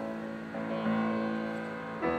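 Solo grand piano, a Yamaha, playing a slow passage: a held chord, then a new chord struck about a second in that rings and fades. The sound echoes in a large room.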